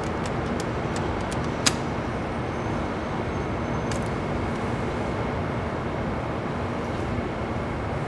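Steady street traffic noise, with a sharp click about one and a half seconds in and a fainter one about four seconds in.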